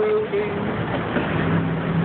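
City street traffic: a steady wash of passing cars, with a low engine hum setting in about a second and a half in.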